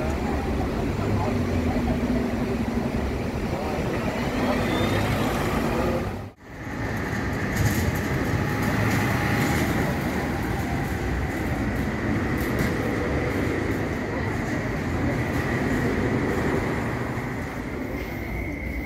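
Road traffic at a bus stop, with a diesel bus running as it pulls in and moves off. The sound cuts out sharply about six seconds in, then traffic noise resumes with a steady high whine.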